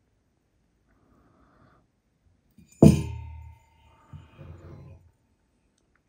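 A single sharp clink of the glass-and-metal transmitting tube being knocked while handled, about halfway through, with a ringing tone that dies away over about two seconds. A fainter, lower handling noise follows about a second later.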